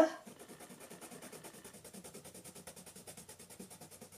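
Lyra blender pencil rubbed quickly back and forth over layered colored pencil on paper, a faint, rapid, even scratching of strokes.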